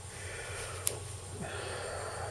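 Quiet workshop room tone: a faint steady low hum, with one brief sharp tick a little under a second in.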